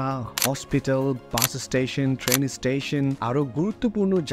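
A man talking steadily in Bengali over background music.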